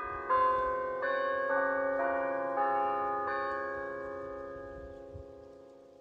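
Church bells chiming a short run of about seven notes over three and a half seconds. The notes ring on together and fade away slowly.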